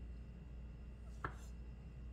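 A small knife slicing through a fresh mushroom onto a wooden cutting board: one short, soft knock a little past halfway, over a low steady hum.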